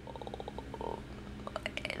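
A quiet, creaky, pulsing sound from a person's throat, like a drawn-out vocal-fry hum while thinking, for about the first second, followed by a few small mouth clicks before speech resumes.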